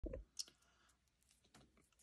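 Near silence broken by a few faint clicks in the first half second, with one sharper click among them: fingers handling a wax-paper card pack before it is opened.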